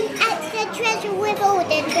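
A young girl's high-pitched voice talking, the words unclear.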